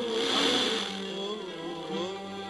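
Music from a distant FM station on 99.2 MHz, received by sporadic-E skip, coming through the tuner. The first second carries a burst of static hiss as the weak signal settles.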